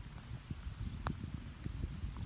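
A single short click about a second in as a putter strikes a golf ball, over a low, uneven rumble.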